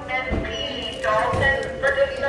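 Voices talking in the background, with two low thumps, about a third of a second and a second and a half in.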